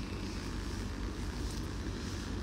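A pause in speech holding only a steady low background rumble with a faint hiss, even throughout.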